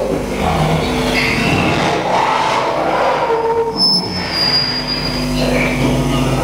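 Live noise-music performance: a loud, continuous wash of harsh noise with shifting squealing tones laid over it, including a high whistle-like tone for about a second and a half in the second half.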